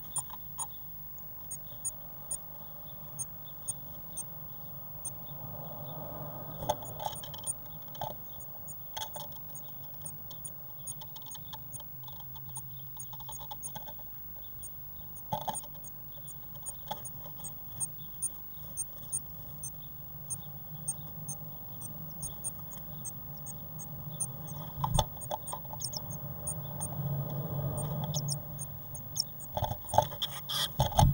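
Blue tit moving about inside a wooden nest box, with rustling and scratching in the moss nest and sharp taps and knocks on the wood, the rustling loudest near the end. Many short, very high-pitched squeaks run throughout.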